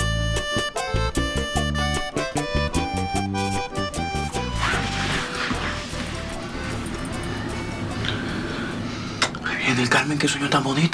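Lively Latin dance music with a steady beat for the first four seconds or so, then a quieter, blurred stretch with indistinct voices.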